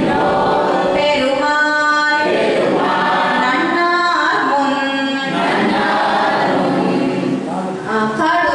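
A woman singing a devotional verse unaccompanied through a microphone, in long held notes that glide between pitches, with short breaks for breath.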